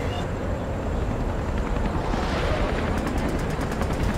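A man making sound effects with his mouth: a long breathy hiss over a rumble, then a quick run of faint clicks near the end.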